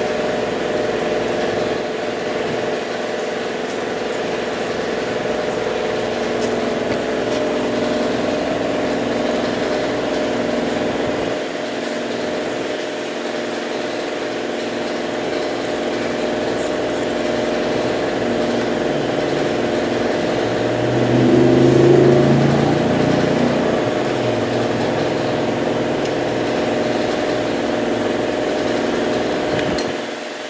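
A steady mechanical hum made of several fixed tones, swelling briefly and rising in pitch about two-thirds of the way through.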